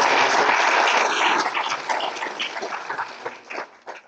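Audience applauding, loudest at first, then thinning out to scattered claps as it dies away near the end.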